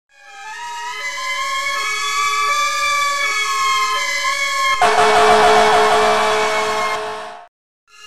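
Fire truck siren: a wail that rises and then holds, with a second siren alternating between two lower notes under it. About five seconds in, a loud air horn blasts over the siren for nearly three seconds, then the sound cuts off suddenly.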